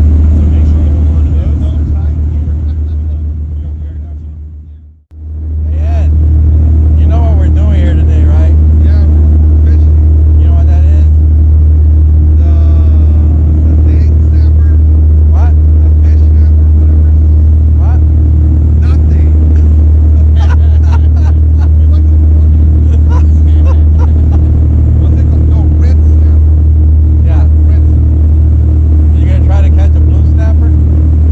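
Party fishing boat running at speed: a loud, steady low engine drone with wind and rushing water. It fades out about five seconds in and comes straight back.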